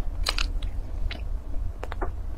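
Mouth sounds of biting into and chewing a mooncake's pastry and filling, with a few short sharp clicks of the lips and teeth.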